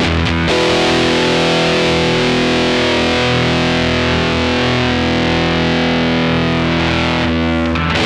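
Electric guitar played through a Stone Deaf Rise & Shine fuzz pedal: a fuzzy, distorted chord struck about half a second in and left to ring for several seconds, with a few new notes picked near the end.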